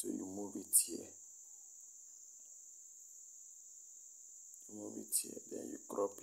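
A man's voice, low and indistinct, briefly at the start and again near the end, over a steady high-pitched whine or hiss that runs throughout.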